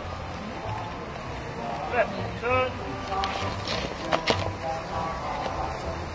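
A squad of rifles being brought from upright in front of the men up onto their shoulders in drill, making a cluster of sharp knocks and slaps of hands on wooden rifles about three to four seconds in, over background voices.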